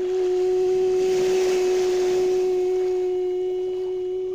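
A single clear ringing tone starts suddenly and holds at one steady pitch, fading slowly, over a faint hiss.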